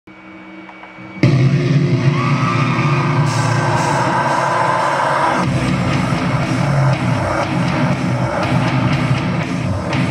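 Metalcore music with drums and heavy distorted electric guitar, cutting in suddenly about a second in after a faint intro, with a sliding high lead line over it until about halfway through.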